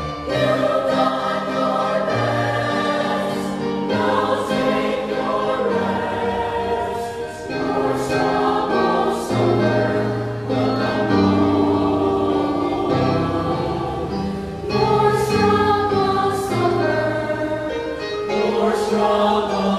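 A mixed choir of women's, men's and boys' voices singing a Christian song in parts, with long held chords and phrases that break and re-enter.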